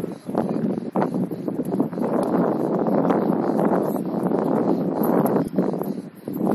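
Wind buffeting the microphone in a loud, dense rush that holds through most of the stretch and eases near the end.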